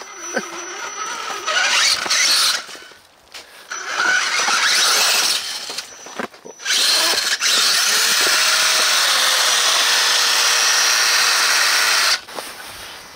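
Electric motor and gear drive of an RC rock crawler built on an Axial Wraith, whining in bursts as it is driven. The last and longest burst runs several seconds with a steady whine under the noise.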